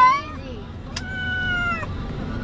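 Distressed cat meowing in a truck cab: the falling tail of one call at the start, then one long drawn-out meow from about a second in, dropping in pitch as it ends.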